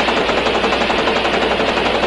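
Rapid, steady mechanical clatter, an even run of about a dozen clicks a second with no change in loudness.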